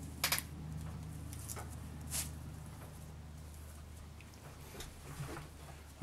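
Hands pressing and smoothing plasticine clay onto a cardboard disc: faint rubbing, a short double click just after the start and another click about two seconds in, over a steady low hum.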